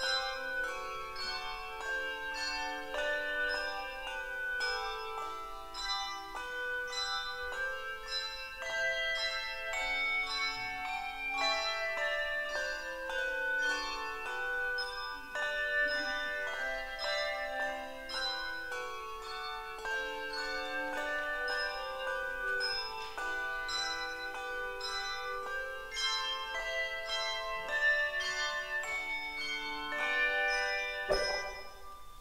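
Handbell choir ringing a piece: many bells struck in quick succession, their notes ringing on and overlapping.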